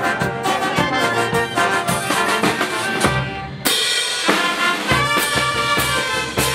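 Andean brass band playing: clarinets, saxophones and trumpets over a steady drum beat. About three seconds in the sound dips briefly, then the full band comes back in sharply.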